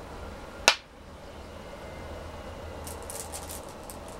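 A Go stone placed on a wooden Go board with one sharp click about a second in, followed near the end by a few faint clicks of stones clinking in the stone bowl, over a low steady hum.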